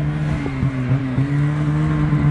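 Snowmobile engine running steadily at a low, even speed, with light clicks over it.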